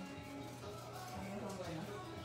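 Background music with faint voices, over the steady hum of an electric hair clipper cutting through long hair.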